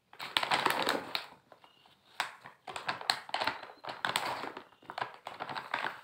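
A large plastic pouch of mass gainer crinkling and crackling as it is gripped and lifted in a cardboard box. It comes in three bursts of a second or so each, with short pauses between.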